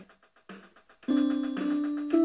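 Casio MA-150 electronic keyboard: after a short quiet gap, held notes begin about a second in, a second note joining half a second later, played along with the keyboard's beat.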